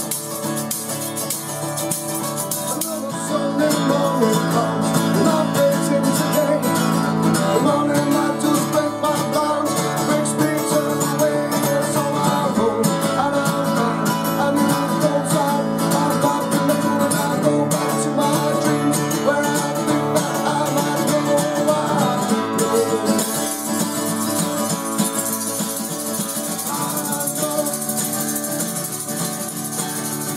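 Acoustic guitar strummed with a tambourine shaken along, in a live acoustic duo performance. A male voice sings over them from a few seconds in until about two-thirds of the way through, and the tambourine's jingle comes through most clearly before and after the sung part.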